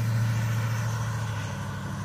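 A motor vehicle's engine running at a steady pitch, a low hum that slowly fades over the two seconds.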